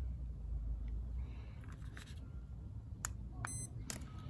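A handheld UV meter gives one short, high-pitched electronic beep a little past halfway, with a click just before it and another near the end, over a low steady rumble.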